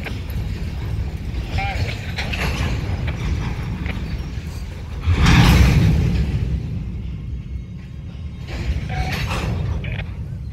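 Freight cars coupling hard during a shove: a sudden loud bang of couplers slamming together about five seconds in, dying away over a second or two as the slack runs through the string of cars. The coupling is harder than it should have been.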